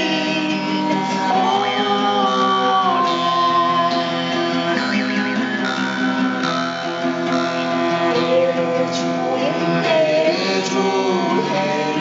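Altai folk music: a long-necked Altai lute (topshuur) and a jaw harp (komus) played together over a steady drone, with a singing voice and a gliding melody line above it.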